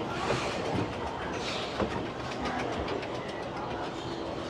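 Escalator running: a steady mechanical rumble with rapid light clicking.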